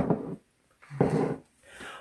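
A single sharp knock, then two short wordless vocal sounds from a woman, each under half a second.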